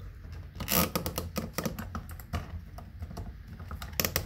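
Irregular clicks and taps of a 50-amp range receptacle's plastic body and metal mounting strap being handled while a stiff No. 8 copper wire is pushed and worked into its terminal hole, with a denser cluster of knocks a little under a second in.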